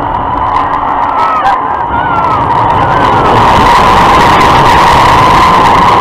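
A looping thrill-ride car going around its vertical loop track, heard from on board: a loud, steady rush of wind and running noise with a steady whine, growing louder about halfway through, and riders' screams rising and falling over it.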